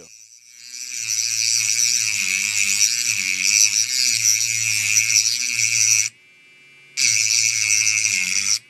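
Mini Dremel precision cutting tool grinding through the metal shield on a phone motherboard: a loud, high whine that builds up over the first second, cuts off about six seconds in, and starts again about a second later.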